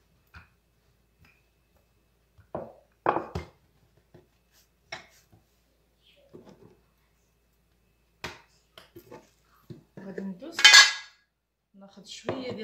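Scattered knocks and clatter of a wooden rolling pin and kitchen utensils on a countertop while a sheet of dough is rolled and handled, with a louder, longer scraping rustle near the end.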